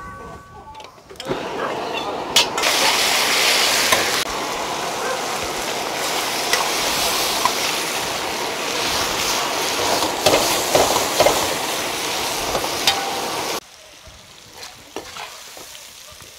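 Cabbage and meat stir-frying in a hot wok: steady sizzling, with the metal ladle now and then clicking and scraping against the pan. It starts suddenly about a second in and cuts off suddenly well before the end.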